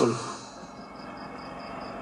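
A pause in a man's sermon over a PA system: his last word fades out with a short echo, leaving the steady background noise of the amplified hall. Briefly, about a second in, there is a faint high ticking about five times a second.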